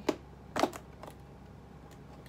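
Hands working at a cardboard laptop box: two sharp clicks about half a second apart, both in the first second, then quiet handling.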